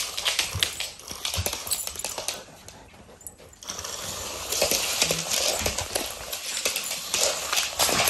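A dog's claws clicking and tapping on a laminate floor as it steps around, with bursts of hissing noise thickening in the second half.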